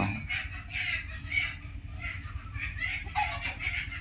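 Birds calling in short, irregular bursts throughout, over a steady low rumble.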